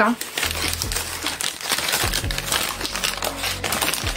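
Paper takeaway bag rustling and crinkling continuously as it is opened and handled.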